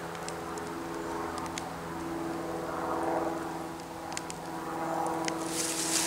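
A steady low motor hum with faint scattered ticks; a louder hiss of noise comes in near the end.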